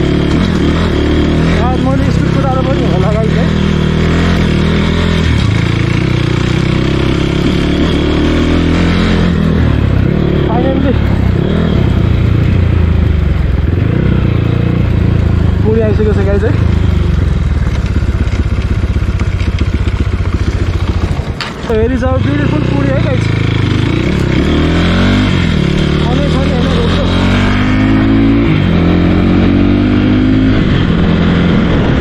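Dirt bike engine running as the bike rides over a gravel track, its pitch stepping up and down with the throttle and rising near the end as it revs up. A voice is heard over it.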